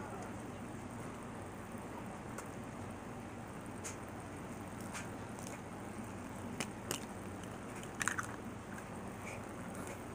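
Someone eating with a metal fork from a glass bowl: a few scattered sharp clicks of fork against glass and bites, the loudest about eight seconds in, over a steady low hum.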